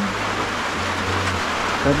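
Heavy rain falling, a steady, even hiss with no break.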